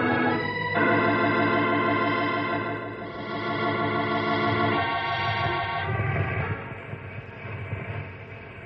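Electric organ music bridge of sustained held chords, changing chord shortly after it begins and again about five seconds in, then fading away.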